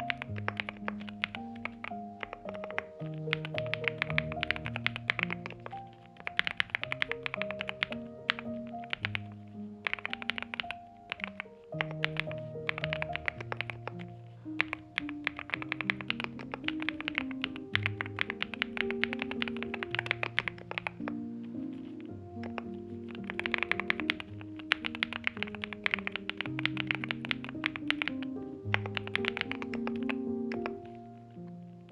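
Typing on a NuPhy Gem80 mechanical keyboard with NuPhy Mint switches, an FR4 plate in a silicone sock gasket mount, and Gem mSA double-shot PBT keycaps: quick runs of key clicks in bursts with short pauses between. Background music plays underneath.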